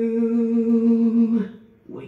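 A male singer holding one long, steady sung note into a microphone, ending about a second and a half in.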